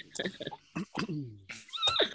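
People laughing over a video call: a string of short laughs that fall in pitch, then a higher-pitched, wavering laugh near the end.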